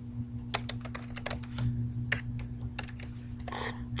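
Typing on a computer keyboard: an irregular run of quick key clicks over a steady low hum.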